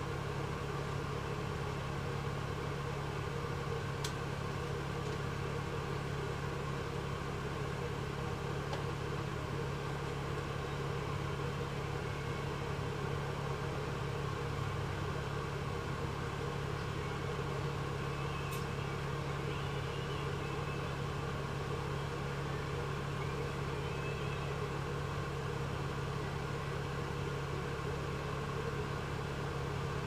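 Steady engine and drivetrain hum heard from inside an Alexander Dennis Enviro400 double-decker bus, a low drone that holds even throughout, with two faint clicks about four seconds in and near the middle.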